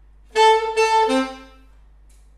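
Saxophone playing a short phrase of a few separately attacked notes, the last one lower and dying away about a second and a half in.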